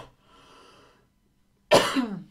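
A woman coughing into her hand: a faint breath in, a short silence, then one loud cough near the end.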